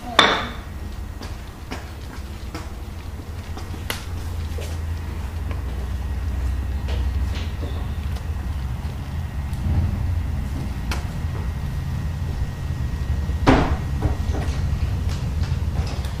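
A sharp knock right at the start, then scattered light taps and clicks, with another sharp knock near the end, over a low steady rumble.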